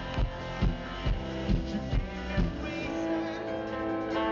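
A rock band playing live through a concert sound system, with guitar and drums. The kick drum beats about twice a second, then drops out about two and a half seconds in, leaving held chords.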